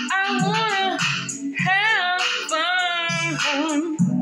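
A woman singing long, sliding notes with no clear words over an upbeat backing track with a repeating bass line.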